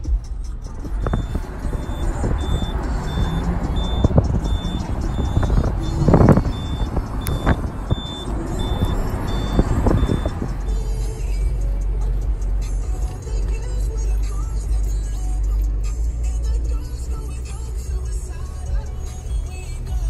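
Honda car driving with a window open: a steady low engine and road rumble, with a louder rush of wind and road noise for the first half that eases off about halfway through. A high beep repeats about twice a second through the middle stretch.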